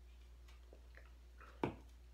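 Faint swallowing from a beer can, then one sharp knock about one and a half seconds in as the aluminium can is set down on the table.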